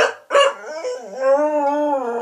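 Cocker spaniel howling: two short sharp cries, then one long howl that wavers slightly in pitch.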